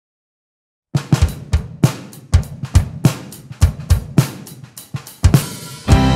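Solo drum kit playing an intro groove to a worship band's song, starting about a second in after silence: kick drum and snare hits with hi-hat and cymbal, around two or three strikes a second.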